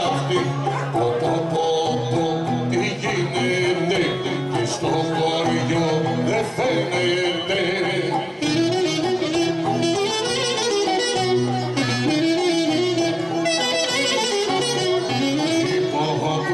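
Live Greek folk music for the kangelari circle dance, the melody played on a violin over a steady low accompaniment, with fast ornamented runs in the second half.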